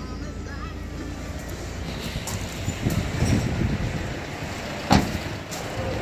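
Handling noise of someone climbing out of a VW Amarok pickup's cab, louder midway, then a single sharp slam just before the five-second mark as the cab door is shut.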